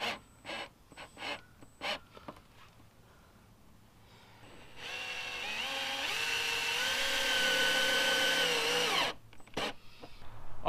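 Cordless drill driving a self-tapping screw through the side skirt into the plastic rocker panel. The motor runs for about four seconds from about five seconds in, its pitch climbing in steps, then stops, with a few brief clicks before and after.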